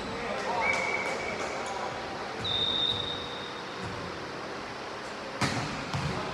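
Indoor volleyball game in a reverberant gym: players' voices murmur throughout, with two brief high-pitched squeaks. One sharp smack of the volleyball comes near the end.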